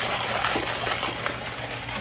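Hand-cranked coffee grinder grinding whole coffee beans, a steady gritty crunching and rattling of beans as the crank turns.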